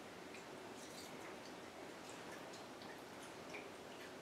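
Faint pouring of rubbing alcohol from a plastic bottle into a small metal measuring cup, with a few light ticks.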